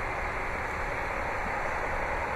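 Steady outdoor background noise: an even hiss over a low, unsteady rumble, with no distinct event.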